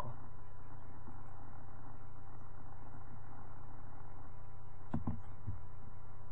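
Steady low electrical hum with a few faint steady tones above it, unchanging throughout, and a faint short sound about five seconds in.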